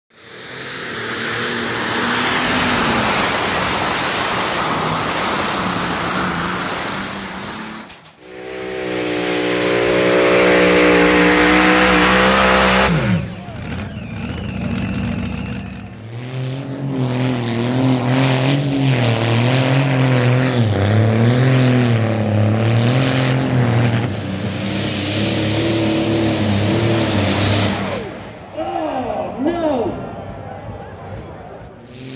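Big tractor-pulling engines running flat out under load. Several runs follow one another with abrupt cuts, each a loud, heavy engine drone; in the longest stretch the pitch wavers up and down as the engine labours.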